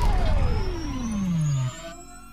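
Synthesized intro sound effect: a single tone sliding steadily down in pitch for a little under two seconds over a deep rumble, then cutting off, with a faint high tone slowly rising.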